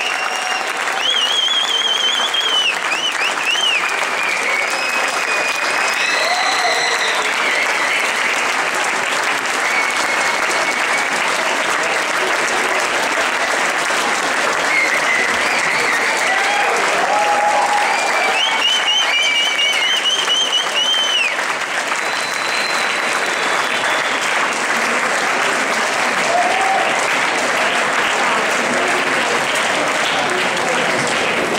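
Audience applauding steadily after a dance, with high wavering whistles from the crowd cutting through near the start and again about two-thirds of the way in.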